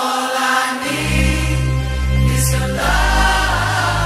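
Electronic dance music from a DJ set: the track drops in loudly with sustained choir-like vocals, and a heavy bass line joins about a second in.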